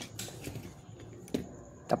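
Light clicks and handling noise of solder wire being pulled off a plastic solder spool, with one sharper click about a second and a half in.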